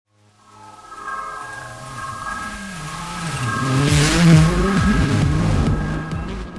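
Logo-intro sound design: held electronic tones building into a swell with a car-engine sound mixed in, loudest with a whoosh about four seconds in.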